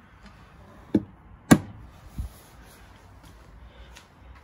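A light knock, then a sharp plastic click about a second and a half in, the loudest sound, then a dull low thump: the Fiat Panda's fuel filler flap being pushed shut against the car's body.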